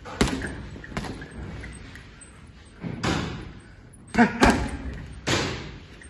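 Boxing gloves striking a leather double-end bag, about six sharp smacks at an uneven pace, the loudest a quick pair about four seconds in, with short forceful exhaled breaths among the punches.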